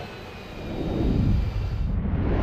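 Jet fighter flyby: a low jet-engine roar that swells about half a second in, is loudest around the second mark, and turns duller near the end.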